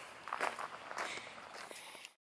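Faint, irregular footsteps on a gravel path.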